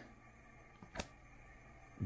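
Near-silent room tone with one short, sharp click about a second in, from trading cards being shuffled in the hands.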